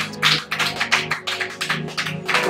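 Hands clapping, about four claps a second, over background music with steady low sustained tones.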